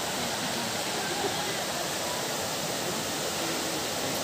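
Steady, even rush of flowing water, with faint voices chattering in the background.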